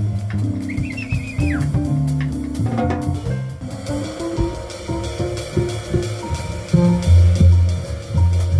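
Live jazz piano trio: upright bass plucked in prominent low notes, drum kit keeping time with steady cymbal strokes, and keyboard comping. The bass notes are loudest near the end.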